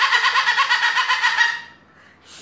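Yellow-crested white cockatoo giving a long, loud call with a rapid, even pulsing, which stops about one and a half seconds in. It is noisy enough to make a listener cover her ears.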